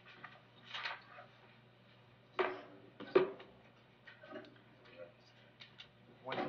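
Courtroom video-feed audio: a low steady hum with brief, faint, indistinct voices and a sharp knock or clank about three seconds in.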